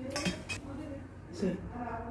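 Metal utensils clinking against stainless steel bowls, with a couple of sharp clinks in the first half-second.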